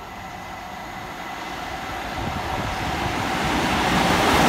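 Class 47 diesel locomotive 47312, its Sulzer twelve-cylinder engine running as it approaches hauling a train of coaches, growing steadily louder throughout.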